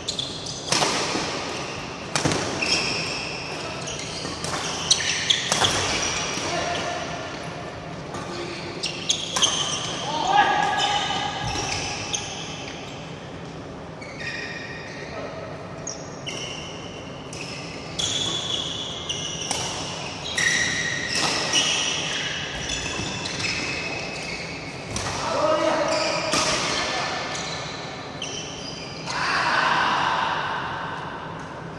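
Badminton doubles play in a large, echoing hall: sharp racket strikes on the shuttlecock and short squeaks of shoes on the court mat, repeated irregularly, with players' voices between rallies.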